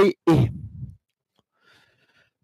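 A man's voice finishes a short phrase that trails off into a breathy exhale, fading out about a second in. Then near silence, with a faint scratchy rustle near the end.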